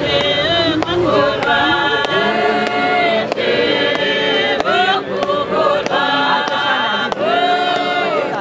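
Congregation of many voices singing a hymn together, holding long notes that shift in pitch every second or so, over a steady beat of sharp strikes about two a second.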